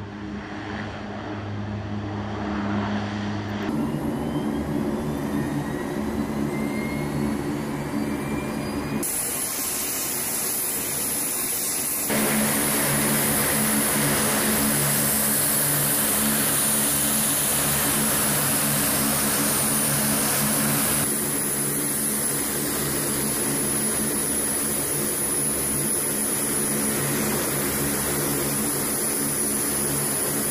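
Lockheed Martin KC-130J Hercules turboprop engines running: a steady propeller drone with a high whine above it. The sound jumps abruptly in level and tone a few times, at about 4, 9, 12 and 21 seconds in.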